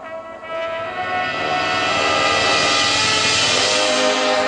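Marching band swelling from a quiet held chord into a loud crescendo. A wash of percussion rises over the sustained brass and fills out the top, reaching full volume about halfway through.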